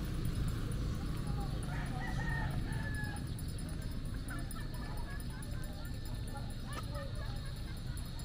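A single long animal call, slightly falling in pitch, about two seconds in, over a steady low rumble.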